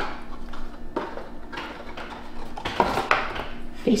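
Cardboard product box and tissue-paper wrapping rustling and scraping as a plastic tube of face cream is slid out, in several short bursts.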